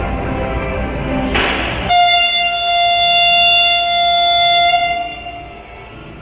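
A train's air horn sounds one steady, loud note for about three seconds, starting about two seconds in, just after a short burst of air hiss, then fades out. Before it, the steady running of a train's engine.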